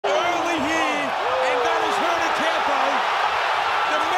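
A man's voice, a ringside commentator, talking over the steady noise of a boxing arena crowd.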